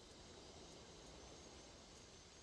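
Near silence: a faint steady hiss.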